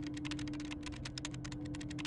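Rapid typing on a computer keyboard, about ten keystrokes a second, over a steady low electrical hum.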